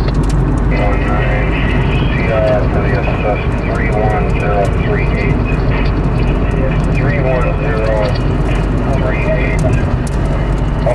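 Steady drone of a car's engine and tyres heard inside the cabin, with band-limited, hard-to-make-out voice traffic from a two-way radio or scanner over it, starting about a second in.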